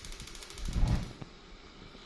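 Gas stove burner being lit under a pressure cooker: the spark igniter ticks rapidly, then the gas catches with a low whump a little under a second in, followed by a single click.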